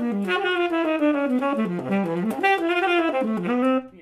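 Saxophone playing a quick jazz lick, a run of fast-changing notes that dips and climbs and breaks off just before the end. It is a transcribed lick being practised, with the opening not played quite right.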